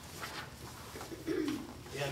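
Papers rustling, then a brief low hummed murmur from a man's voice near the end.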